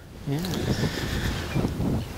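Wind on the microphone, a steady low rumble, under a man's brief "yeah".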